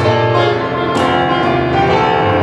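Solo piano playing loud, ringing chords over a held low bass, with a strong chord struck about a second in.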